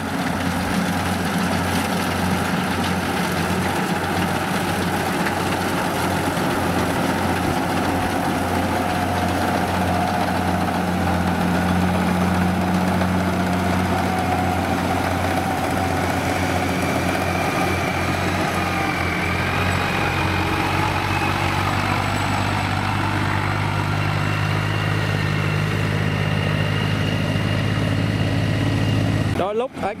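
Rice combine harvester running steadily while cutting and threshing rice: a continuous diesel engine and machinery drone. A fainter, slowly rising whine joins about halfway through.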